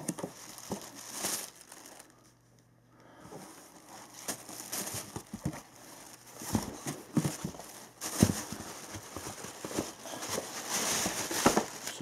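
Tissue paper crinkling and rustling as a cardboard shoe box is opened and the wrapping folded back, with a few knocks from the box. There is a brief lull about two seconds in, and the rustling grows busier near the end as the shoe is lifted out.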